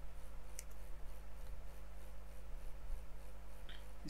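Steady low electrical hum and background noise from the recording setup, with a single sharp click about half a second in.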